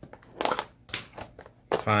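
A sealed trading-card blaster box being opened by hand: a few short crackling bursts of its packaging about half a second to a second in.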